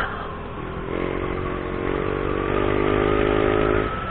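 Motorcycle engine pulling under acceleration: a steady engine note climbs slightly in pitch for about three seconds, then drops away just before the end. Wind rushes at the microphone throughout.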